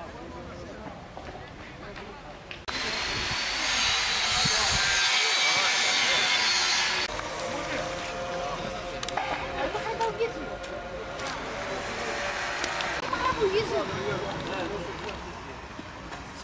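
Indistinct voices of men talking outdoors. A loud, steady hiss cuts in suddenly about three seconds in and stops about seven seconds in, covering the voices.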